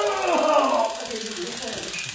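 Police taser running its five-second cycle, a rapid, even clicking of about twenty pulses a second, while the man being shocked cries out in a strained, wavering voice.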